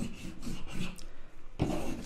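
A pen scratching on a sheet of paper, drawing a few short strokes of a box.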